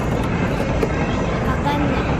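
Steady city background noise: a low rumble of traffic with faint voices of passers-by mixed in.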